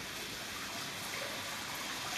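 Steady running water trickling into a fish pond, an even hiss with no breaks.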